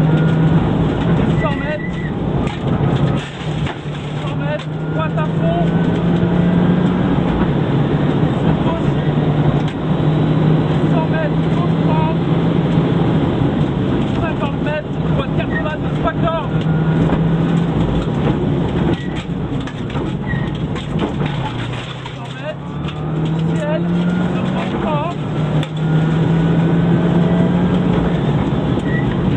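Subaru Impreza N4 rally car's turbocharged flat-four engine heard from inside the cabin at full effort, its pitch climbing and dropping back again and again as it pulls through the gears. There is a brief easing off about three-quarters of the way in.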